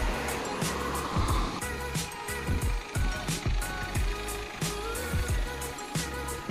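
Background music with a steady beat: a repeating low thump, regular high ticks and a held melody line.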